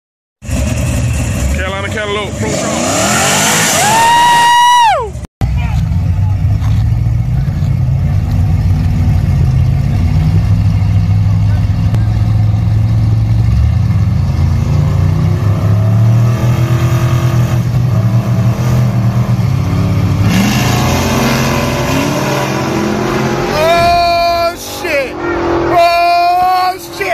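The engine of a donk drag car on big rims: a rising rev that cuts off about five seconds in, then a long steady deep rumble at the start line, building again near the end.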